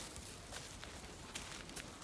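Faint footsteps and scuffs on dry dirt and leaf litter, with a few soft scattered clicks.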